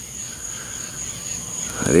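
Crickets trilling in one steady, unbroken high-pitched tone.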